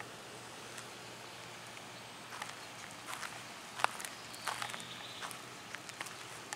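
Footsteps on wood-chip mulch: soft steps about every three quarters of a second from a couple of seconds in, over a faint steady outdoor background.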